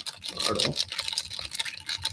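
A stirring stick stirring a gin and tonic in a highball glass: rapid irregular clicks of the stick against the glass, with the liquid swishing.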